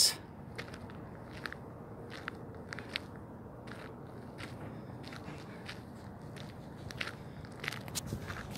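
Faint, irregular small clicks and crackles, one or two a second, over a low steady hiss.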